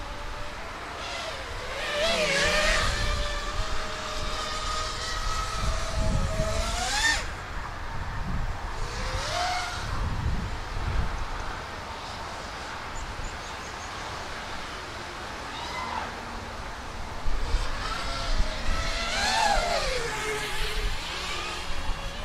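EMAX Hawk 5 five-inch FPV racing quadcopter in flight: the whine of its brushless motors and propellers rises and falls in pitch as the throttle changes. It surges sharply several times, most strongly about seven seconds in and again near the end, over a low rumble.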